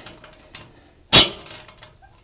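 Socket wrench working a rusted U-bolt nut on a trailer tongue: one sharp metallic clack about a second in, with faint handling noise around it, as the nut comes loose.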